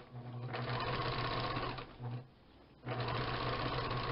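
Sewing machine stitching a seam around a fabric pouch in two steady runs, stopping for about half a second a little past the middle before running on again.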